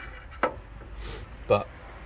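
A single sharp knock about half a second in, metal parts being handled and shifted at a car's front strut tower to line up the mounting holes.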